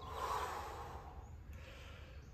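A person's forceful exhale of effort while pressing a kettlebell, a breathy rush of air lasting under a second near the start, then fading.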